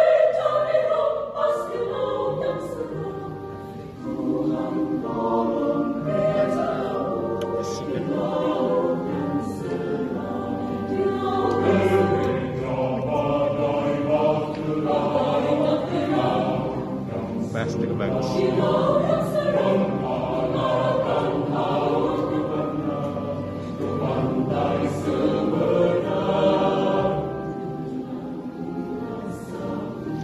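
Mixed adult choir singing in several voice parts with keyboard accompaniment, with a brief drop in loudness about four seconds in.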